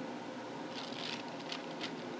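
Wax paper lining a pan crinkling in a few short rustles about a second in as it is handled, over a steady low room hum.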